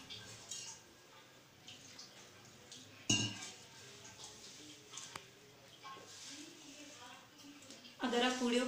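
Hand working whole-wheat flour and water into chapati dough in a stainless steel plate: soft, irregular rustling and scraping of flour against the steel, with a sharp clink on the metal about three seconds in and a smaller one near five seconds.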